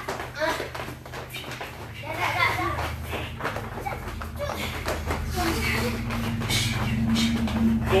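People talking in the gym while exercising, with a few short knocks. A low steady hum grows louder about halfway through.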